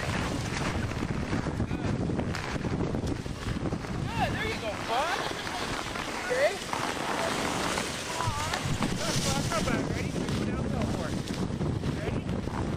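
Wind buffeting the microphone in a steady low rumble, with high children's voices calling out in the middle.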